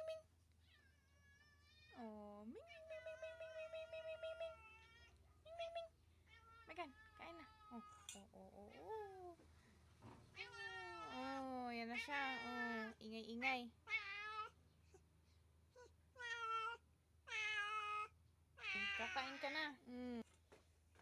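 Pet cats meowing again and again: a run of separate calls of varying length, some held on one pitch and others bending up and down.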